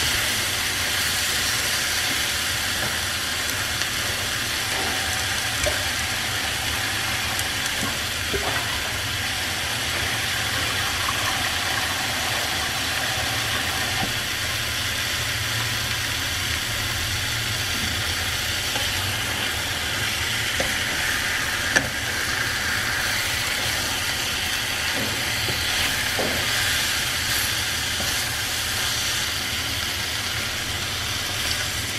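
Raw mutton pieces sizzling steadily in curry spice paste in a frying pan, stirred with a wooden spatula that knocks against the pan a few times, the sharpest knock about two-thirds of the way through.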